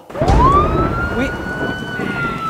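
Siren-like sound effect marking a foul in a game: one tone that sweeps up quickly and then sinks slowly, over a loud rough rumble.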